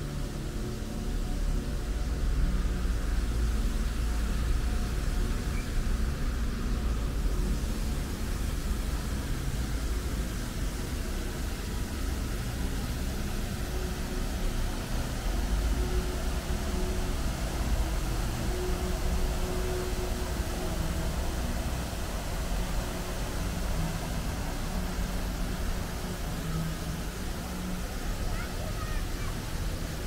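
Steady outdoor ambience: the splashing of a fountain jet falling into a pond over a low rumble of city traffic. The splashing grows brighter from about seven seconds in.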